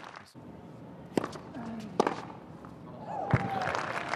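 Tennis ball struck by rackets three times in a rally, the strokes about a second apart, with a short vocal grunt from a player around the later strokes.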